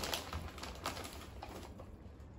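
A few faint crackles and clicks from a snack bag being handled as shrimp crackers are pulled out of it.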